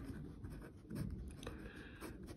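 Ballpoint pen writing on paper, giving faint, irregular scratching strokes.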